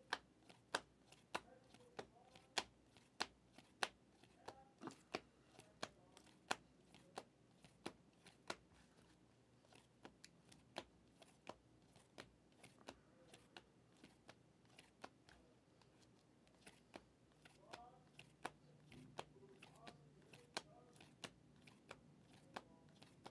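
A stack of trading cards being flipped through by hand, each card snapping off the stack with a sharp click, about two a second at first and more spaced out later.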